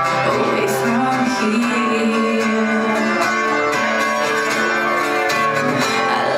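Live band playing: strummed acoustic guitar chords, with a drum kit and cymbal strokes, at the start of a song.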